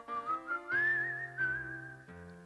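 A whistled tune with a slight waver, rising over the first half-second and holding higher notes, over soft backing music from an old TV advert's soundtrack.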